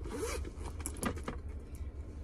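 A short zipper-like scrape, then a few light clicks as something is handled, over a steady low rumble inside a car.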